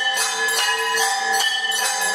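Metal temple bells rung over and over, about three strikes a second, their tones ringing on and overlapping between strikes.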